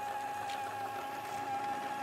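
Battery-powered toy bubble machine's small motor and fan running with a steady hum.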